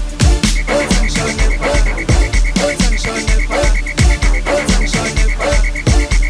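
Gqom dance music: a heavy, repeating bass-kick pattern under a recurring pitched synth stab. A rapidly pulsing high tone comes in about half a second in.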